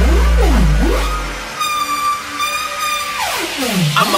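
Instrumental break of a hip-hop/trap track: a long, deep bass note that fades out about a second and a half in, falling synth sweeps, and a held high synth tone through the middle, with no vocals.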